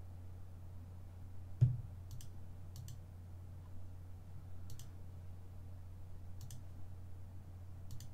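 Computer mouse clicks: a handful of short, sharp clicks spaced a second or two apart, with one louder knock about one and a half seconds in, over a steady low hum.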